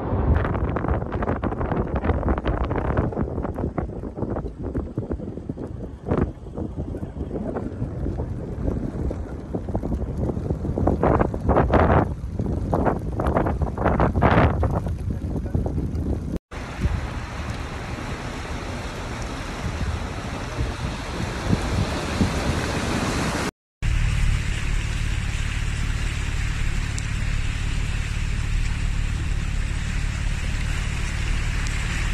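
Floodwater rushing down a street in a heavy storm, with gusts of wind buffeting the microphone. After a sudden cut, a steady hiss of wind and rain. After another cut, a car driving through floodwater: a steady low engine drone in the cabin with the wash of water under it.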